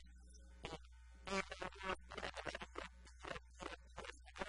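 A man talking in Spanish, starting after a brief pause, over a steady low hum.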